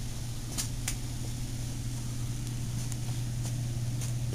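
Steady low hum, with two faint clicks a little under a second in.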